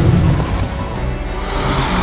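Film soundtrack: dramatic music under a heavy low rumbling sound effect, with a whoosh swelling up near the end.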